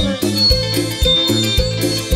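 Live band music in an instrumental stretch without singing: sustained bass notes under a steady beat of about two strikes a second.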